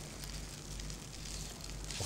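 Diced kavourmas (Greek preserved beef) frying in a pan: a low, steady sizzle.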